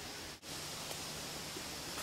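Steady faint hiss of open-air background noise, cutting out for an instant a little under half a second in.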